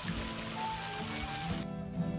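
Background music over the steady splashing of a stone garden fountain's water jets. The water cuts off abruptly near the end, leaving only the music.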